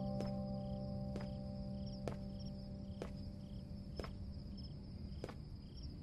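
Crickets chirping steadily in a quiet night-time ambience, with faint clicks about once a second. Held music notes fade out during the first two seconds.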